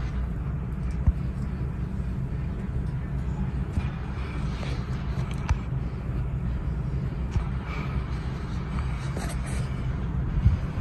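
Gulf Coast Riviera II 52-inch ceiling fan running steadily, its blades moving air with a low, even rush, with a few faint clicks.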